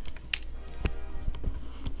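Soft background music, with a few light clicks.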